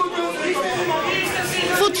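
Several men arguing with raised voices, talking over one another in a large meeting hall. A news narrator's voice begins near the end.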